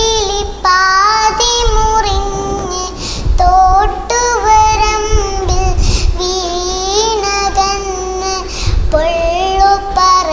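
A young girl singing a Malayalam song solo, with sustained notes that glide and waver between phrases.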